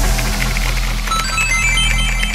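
Vinahouse dance music in a sparse break between vocal lines: a held deep bass note with short, high, bell-like synth notes coming in about a second in.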